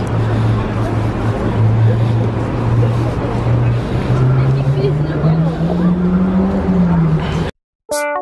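Street noise dominated by a motor vehicle engine's low hum, holding steady, then rising in pitch over a few seconds and dipping again, with voices in the background. The sound cuts off abruptly just before the end.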